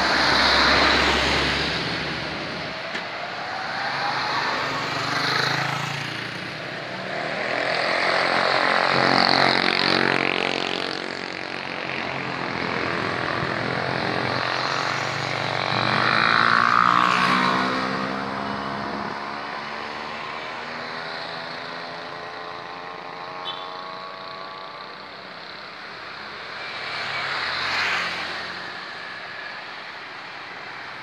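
The KA Harina passenger train running past close by: a continuous rolling rumble of its coaches on the rails, swelling and fading several times as the train goes by.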